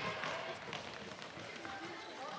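Floorball players' footsteps running on a sports hall floor, with a few sharp clicks of sticks and ball and voices calling in the echoing hall.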